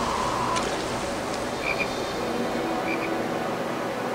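Anime soundtrack with a frog croaking, short double croaks about every second and a half over a steady background hiss.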